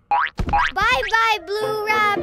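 Cartoon sound effect for the giant rabbit vanishing: two quick upward swoops, then a high, wavering, wobbling tone.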